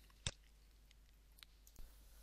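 A single sharp click about a quarter of a second in, then near silence with a couple of faint ticks.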